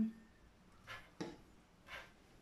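A paintbrush working alcohol-thinned colour in a plastic paint palette: three short, faint scratchy strokes.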